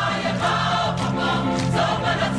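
A large group of voices singing a Samoan siva song together, steady and loud.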